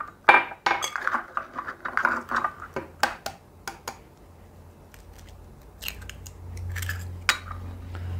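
Eggs being cracked against a glass measuring cup and tipped into a glass mixing bowl: a series of sharp taps and clinks of shell on glass, some briefly ringing. A low hum comes up in the second half.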